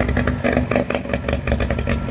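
1958 DKW 3=6's 900 cc three-cylinder two-stroke engine idling, with a steady, rapid exhaust beat.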